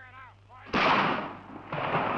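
Two loud gunshots, the first about two-thirds of a second in and the second about a second later, each starting suddenly and trailing off in a long echoing tail.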